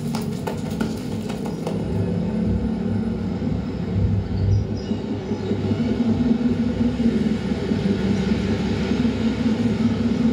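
A low, steady rumbling drone with a hum running under it, played over a hall's speakers, with a few sharp clicks in the first couple of seconds.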